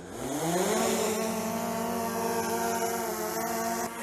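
DJI Mavic Air 2 drone's motors and propellers spinning up from rest: a pitched hum that rises over about the first second as it lifts off, then holds a steady pitch as it climbs away.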